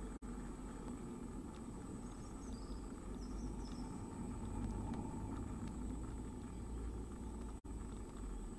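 Steady low rumble and hum of background noise inside a wooden nest box, with a thin, high electronic whine throughout and a few faint, high chirps about three seconds in, while the nestlings lie quiet.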